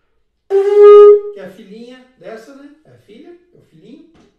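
Conch shell trumpet blown with buzzing lips: one loud, steady horn-like note about half a second in, lasting under a second, then dying away into quieter wavering tones.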